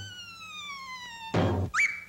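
Cartoon sound effect: a whistle-like tone slides steadily downward for over a second and ends in a short loud hit, then a quick upward slide to a held high tone that cuts off.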